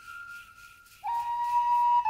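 A flute plays a slow, sustained melody. A high held note fades away into a brief lull, and about a second in a lower note begins and is held steadily.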